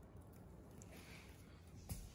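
Near silence: room tone, with one faint short click just before the end.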